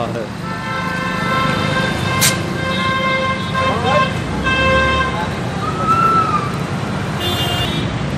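Busy street traffic of scooters, motorcycles and cars, with vehicle horns honking: one horn is held steady for several seconds, and a shorter, higher horn sounds near the end.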